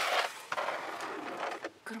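Cardboard doll boxes with plastic windows sliding and rubbing against each other as they are pushed across a table: a loud scrape at first, then a quieter, steadier scraping with a couple of light knocks.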